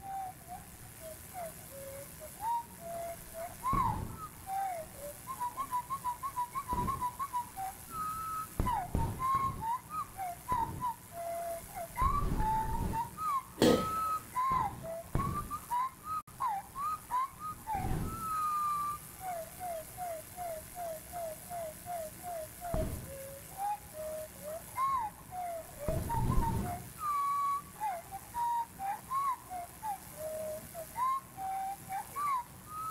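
Winter wren song played back at one-sixth speed over a room's speakers, its notes lowered to a whistle-like pitch: a long string of separate notes sliding up and down, broken by fast trills of evenly repeated notes. A sharp click sounds a little before the middle.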